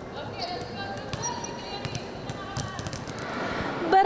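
Several basketballs being dribbled on a court, with quick, irregular bounces overlapping one another over background chatter of voices.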